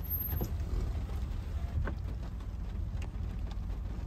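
Low, steady rumble of a pickup truck heard from inside its cab as it rolls slowly across a pasture, with a few faint ticks and knocks.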